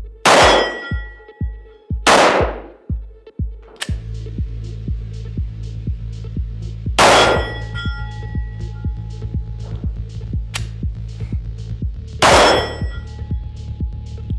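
Four shots from a 9mm Walther PPQ pistol, each with a metallic ring and echo: two about two seconds apart at the start, one about seven seconds in and one near the end. Background music with a steady beat runs underneath.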